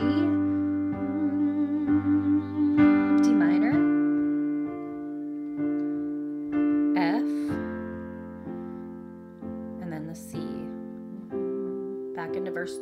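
Piano chords held and restruck with both hands, a simple progression in the key of C (G, D minor, then C), the chord changing about every four seconds.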